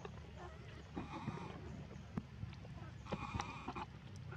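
Macaque calls: two short cries, about a second in and again near the end, with scattered light clicks in between.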